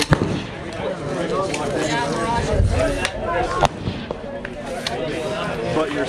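A single precision rifle shot just after the start, the loudest sound, followed by low talk and a few fainter sharp clicks.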